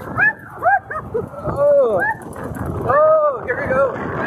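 A woman laughing and letting out long rising-and-falling whoops while riding a spinning wild mouse roller coaster, over a steady rush of wind and track noise.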